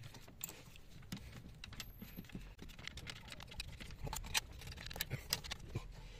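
Faint, irregular small clicks and taps of screws being turned in and tightened by hand on an engine-bay housing. The clicks come closer together from about two-thirds of the way through.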